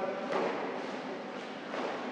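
A thud about a third of a second in as a karateka lunges in with a reverse punch (gyaku tsuki) on a mat, followed by a couple of fainter knocks.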